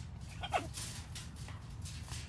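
A macaw gives one brief call that falls steeply in pitch about half a second in. Light clicks and taps sound from the birds moving on the metal mesh tabletop.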